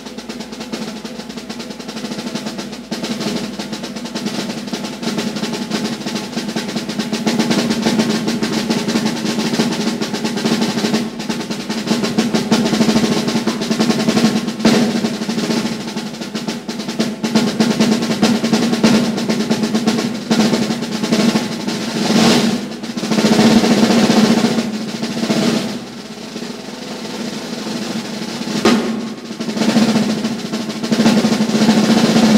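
Jazz drum kit played solo with sticks: a continuous roll across the drums that starts suddenly and builds gradually in loudness, with surges about two-thirds of the way through.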